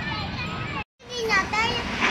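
Children's voices chattering and calling out. The sound drops out completely for a moment just under a second in, then the voices carry on.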